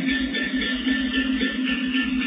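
Teochew opera instrumental accompaniment with a steady held note, no voice singing.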